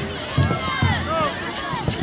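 Crowd chatter: many voices of adults and children talking at once, with a few low thumps.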